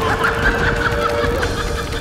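Men laughing mockingly, snickering and chuckling, over a steady held music tone.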